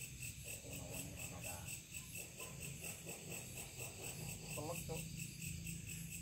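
Crickets chirping in a steady, evenly pulsed high-pitched chorus, several pulses a second, with faint voices in the background.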